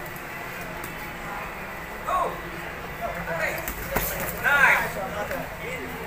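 Indistinct shouting voices from around a boxing ring, in short calls, the loudest near the end. About four seconds in there is a single sharp smack.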